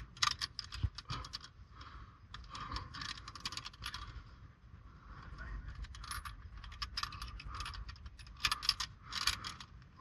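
Climbing carabiners and quickdraws clinking and clicking against a steel bolt hanger and anchor rings as they are clipped and handled. The clicks come in irregular clusters.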